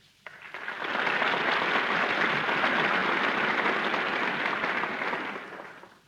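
Studio audience applauding on a 1936 radio broadcast recording. The applause builds within the first second, holds steady, and dies away over the last second.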